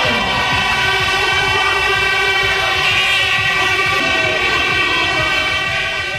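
A race starting horn sounding one long, steady blast that signals the start of the marathon, with crowd noise beneath it.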